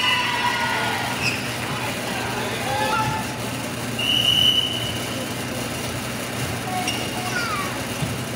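Indoor gym crowd noise during a volleyball match: players and spectators calling out and chattering, with a steady low hum. A single short blast of a referee's whistle sounds about four seconds in, signalling the next serve.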